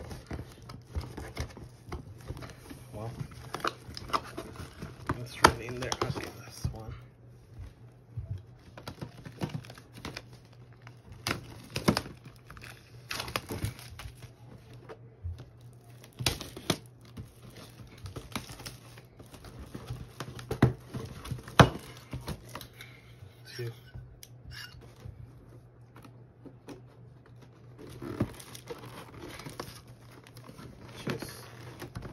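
Clear plastic shrink-wrap being torn and crinkled off a cardboard box by hand, with scattered sharp crackles and rustles. A steady low hum runs underneath.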